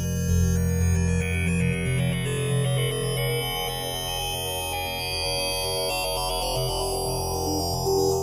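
Synthesizer soundscape from Logic Pro X's Alchemy spectral engine resynthesizing an imported PNG image: a dense, steady wash of many held tones with a strong low end.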